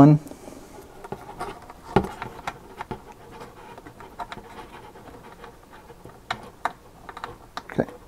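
Quiet handling noises: scraping and a few sharp clicks as a CPU-cooler mounting standoff is worked through a motherboard's mounting hole.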